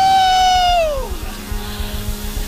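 A man's long, high "woo!" shout through a microphone, held for about a second and then sliding down in pitch. Underneath it plays soft music from the band, with a low repeating beat.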